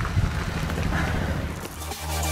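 Low rumbling background noise, then electronic music with a heavy bass coming in near the end.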